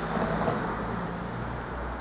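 Steady urban road traffic noise, an even low rumble of cars on the surrounding streets.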